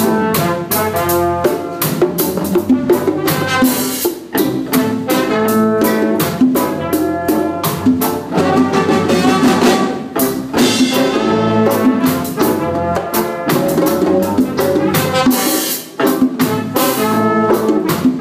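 Reggae band playing live in rehearsal: drum kit, electric guitar and bass guitar in an instrumental passage, with no singing yet. The level dips briefly about four seconds in and again near the end.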